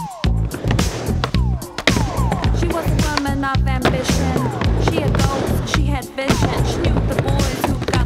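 Skateboard wheels rolling and trucks grinding on the coping of a mini ramp, heard over backing music with a steady beat.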